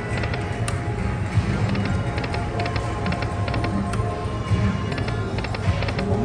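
Dragon Link video slot machine playing its electronic game sounds: repeated clusters of rapid ticks over sustained electronic tones, with a steady low hum beneath.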